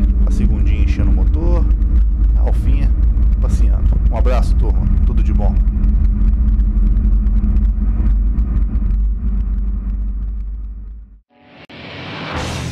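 Car engine and tyre/road rumble heard from inside the cabin at track speed, steady and loud, fading out about eleven seconds in. Music starts just before the end.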